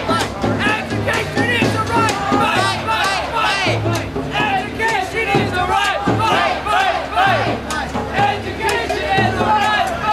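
A crowd of protest marchers chanting and shouting together, many voices overlapping, with music playing along.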